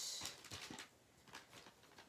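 Faint handling sounds: a kraft-paper bag rustling and the plastic-handled mini pinking shears clicking lightly as they are picked up and positioned, with a short rustle at the start and a few soft clicks after.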